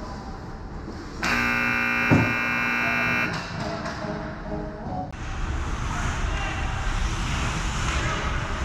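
Ice rink scoreboard goal horn sounding one steady, multi-tone blast of about two seconds, signalling a goal just scored, with a single thud about a second into it.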